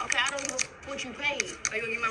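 Indistinct voices talking, with a few short sharp clicks among them.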